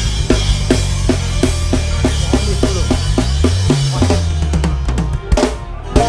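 Live band music without vocals: a drum kit plays a steady beat with bass drum and snare over a rolling bass line. Near the end the groove drops out, leaving a couple of hard drum hits.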